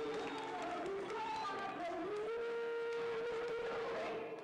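A person's voice sliding up in pitch and holding one long note in the second half.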